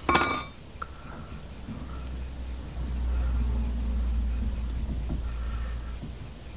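A sharp metallic clink with a thin ringing tail that fades over about a second and a half, from steel parts or a tool knocking together at a car's steering track rod end. A low rumble swells from about three seconds in and eases off near the end.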